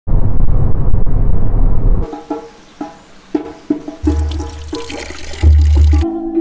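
Loud, steady road and wind noise inside a moving car that cuts off abruptly after about two seconds. Music follows: separate plucked notes, joined by a deep bass about two seconds later.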